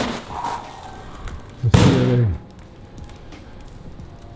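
Packing material being handled and tossed aside, a brief rustle at the start, then a short shouted exclamation with a falling pitch about two seconds in, followed by low room noise.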